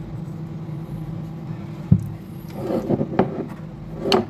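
Handling noises on a wooden desk over a steady low hum, with one sharp knock about two seconds in, as the speaker is put down and a hammer picked up.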